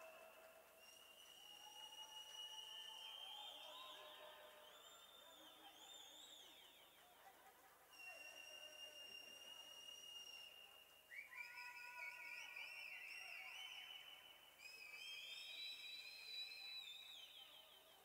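Faint electronic tones: several long, wavering pitched tones that glide slightly and overlap, each held for a few seconds before giving way to the next.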